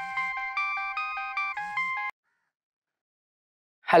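Mobile phone ringtone: a quick electronic melody of short notes that cuts off about two seconds in as the call is answered.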